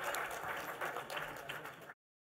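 Audience applauding, a dense patter of many hands clapping that fades and then cuts off abruptly just before the end.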